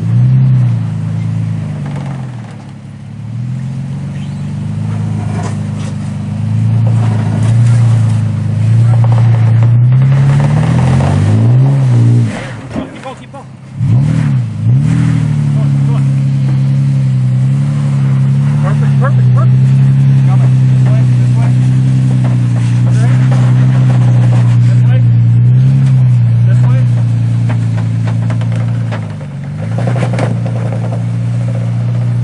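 Toyota Tacoma pickup's engine revving up and down under load as it crawls up a steep slickrock step on an open front axle. The engine note sags briefly about halfway through, then climbs back and holds at higher revs.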